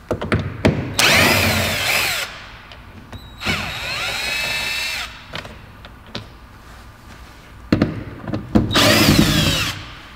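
Cordless drill/driver backing out Torx T20 door-panel screws: three short runs of its motor whining, each rising and falling in pitch, the middle one quieter and steadier. Sharp clicks and knocks come between the runs.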